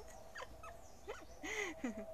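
A young woman giggling in short squeaky bursts that slide up and down in pitch, with a breathy burst of laughter about one and a half seconds in. A faint steady hum runs underneath.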